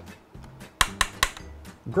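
Three quick finger taps on the thin sheet-metal front panel of a power strip, sharp metallic clinks with a brief ring about a second in. They are meant to let the metal be heard.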